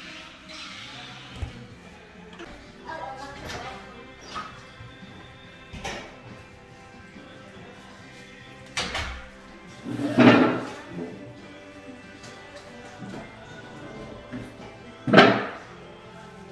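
Background music running steadily, with a few short, sudden knocks, the loudest near the end, and a brief laugh about ten seconds in.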